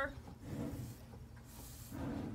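Faint hiss of milk squirted by hand from a cow's teat onto a small strainer cup, the first streams being checked for clumps or off-colour milk.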